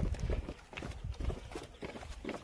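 Footsteps in sandals going down stone steps, a steady run of short scuffing knocks, with a brief low rumble at the start.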